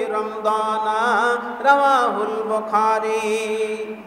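A man's voice chanting in a drawn-out melodic style, with long held notes that waver and bend in pitch, the last note held steady for about two seconds.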